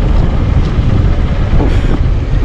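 Motorcycle riding over a rough, loose-gravel track: a loud, steady low rumble of the engine and the tyres on stones, with wind on the microphone.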